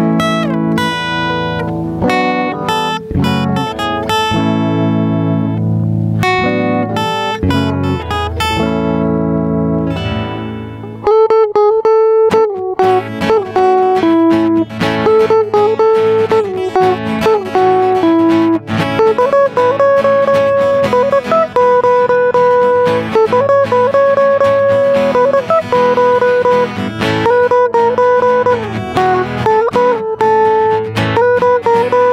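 Acoustic guitar picking a melody with chords; about eleven seconds in, an electric guitar comes in louder with a sustained lead line and bent notes, over acoustic guitar chords.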